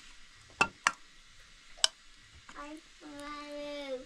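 A metal ladle clinks against a pot three times, the last the loudest, with a short ring, as stew is scooped into a bowl. About two and a half seconds in, a child's voice starts one long held note.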